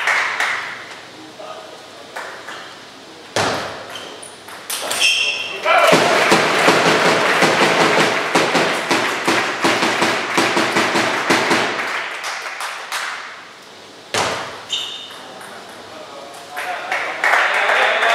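Table tennis ball clicks sharply off bat and table a few times in a large hall. Then comes about six seconds of dense spectator applause, fading out, with a raised voice near the start and the end.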